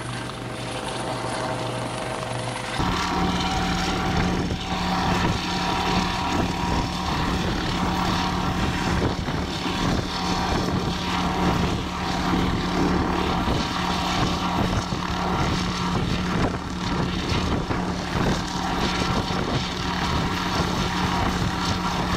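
US Coast Guard MH-65 Dolphin helicopter hovering low over the water, its rotor beating fast and evenly over a steady hum. It grows louder about three seconds in.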